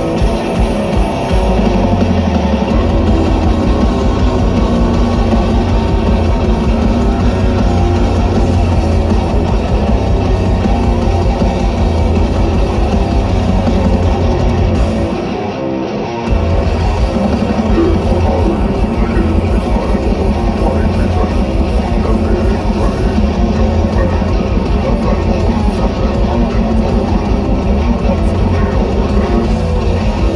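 Death metal band playing live through a festival PA: distorted electric guitars, bass and drums. About halfway through, the band stops for about a second, then comes back in.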